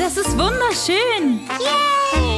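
A child's voice making several short rising-and-falling exclamations, the last one a long falling note, over children's background music.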